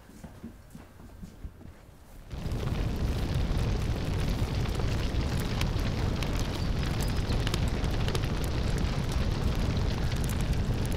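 Quiet room tone, then about two seconds in a sudden onset of a big fire burning: a steady, deep rumbling noise with scattered crackles, the sign of the house having caught fire from a stove left on.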